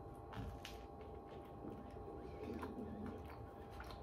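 Faint chewing of a bite of toasted bread with avocado: scattered small crunching clicks.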